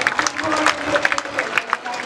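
Audience applause, a dense patter of many hands clapping with crowd voices mixed in.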